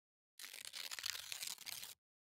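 Paper tearing and crinkling sound effect, a crackly rustle of about a second and a half that starts about half a second in and cuts off suddenly.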